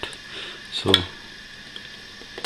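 Faint clicks and rubbing of small plastic computer-fan parts being handled by hand.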